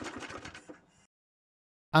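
Briggs & Stratton Classic 35 single-cylinder lawnmower engine winding down after the stop switch grounds the ignition coil and kills the spark. Its beats slow and fade over about a second, then cut to silence.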